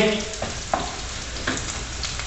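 Potatoes frying in hot oil in a pan: a steady sizzle, with a few short knocks as they are stirred so they don't burn.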